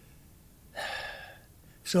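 A man's audible intake of breath, a single breathy rush lasting about half a second that starts nearly a second in and fades away.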